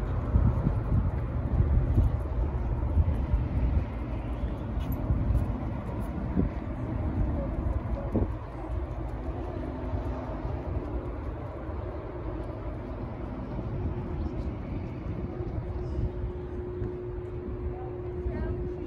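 Wind buffeting the microphone outdoors, a gusty low rumble that is strongest in the first few seconds and then settles; a steady low hum joins in during the last few seconds.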